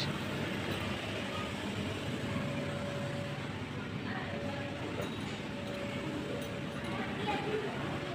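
Steady room hum with a faint even tone through most of it, and distant voices in a large hall.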